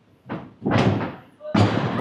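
Thuds on a gym tumbling floor as a tumbler goes through a skill and lands: a light hit, then two heavier ones about a second apart.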